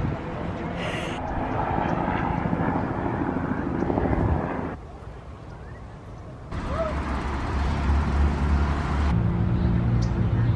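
Outdoor ambience: a steady low rumble of wind on the microphone and distant traffic, with faint background voices. The sound changes abruptly about halfway, again a little later, and once more near the end.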